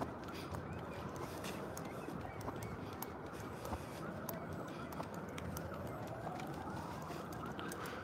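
Steady urban background hum with a distant siren whose faint wail rises slowly in pitch over the second half.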